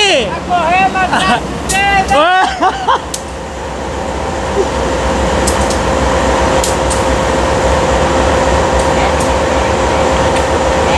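Voices for the first three seconds, then diesel-electric freight locomotives running: a steady engine drone with a held tone in it, growing louder over about two seconds and then holding level.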